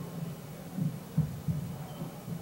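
A low steady hum with a few dull thumps about a second in.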